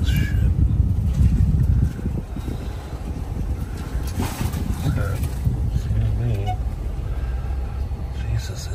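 Car driving slowly, heard from inside the cabin: a steady low engine and road rumble that eases off about two seconds in.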